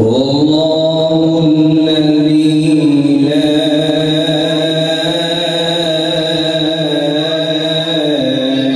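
A man's voice, amplified through a microphone, chanting one long held note that starts sharply and stays steady in pitch, in the manner of devotional recitation. A thin, steady high whistle rides above it.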